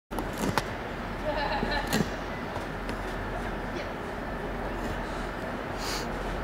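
Steady outdoor rumble of a rail yard, with a few sharp clicks and a brief faint voice within the first two seconds.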